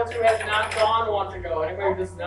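Speech: voices talking in a classroom, too indistinct for the recogniser to write down.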